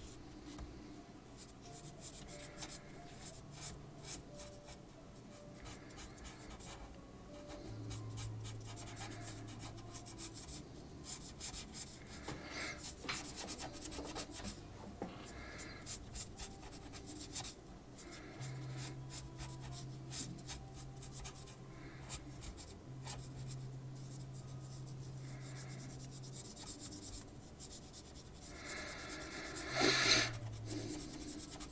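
Felt-tip marker rubbing on paper in many short colouring strokes, filling in an area with colour.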